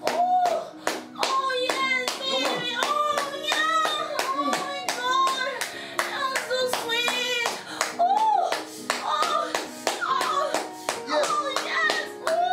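Steady hand claps, about three a second, over music with sustained chords and a sung melody.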